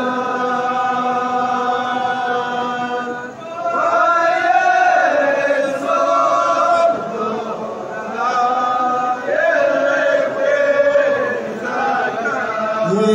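A group of men chanting together in unison in Hawara folk style: long held sung phrases, each rising and falling, with short breaks between them.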